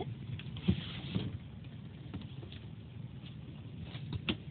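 Faint handling noise: a few soft taps, the clearest about a second in, over a low steady background.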